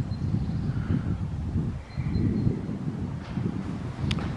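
Wind buffeting the camera's microphone outdoors, a low rumble that rises and falls, dipping briefly about halfway through.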